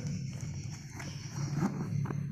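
A steady low hum with a few faint clicks and taps, typical of handling noise.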